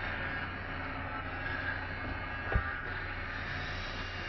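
Steady low hum with a hiss over it, and a single short thump about two and a half seconds in.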